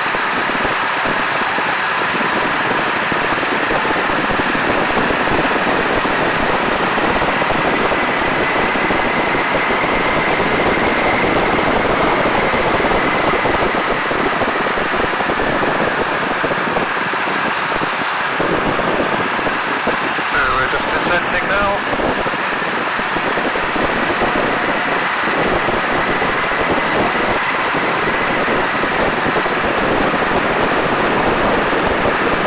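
Steady, loud rush of wind mixed with the drone of a biplane's engine in flight, heard from a camera on the wing. A brief crackle comes about twenty seconds in.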